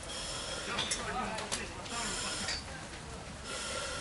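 Fire hose spraying water with a steady hiss that cuts out about halfway through and starts again near the end, with faint voices underneath.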